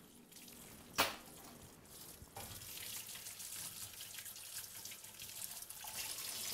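A sharp clink about a second in, then a kitchen tap running into a stainless steel sink as a plate is washed by hand under the stream.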